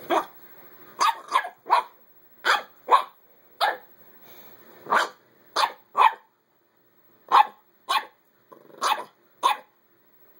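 Small dogs barking in play: about fourteen short, sharp barks, roughly one or two a second, some in quick pairs, with brief silent gaps between.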